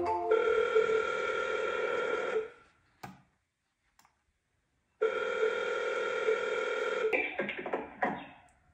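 Telephone ringback tone from an outgoing call placed with a computer auto dialer. It rings twice, each ring about two seconds long, with a silent gap of about two and a half seconds between them.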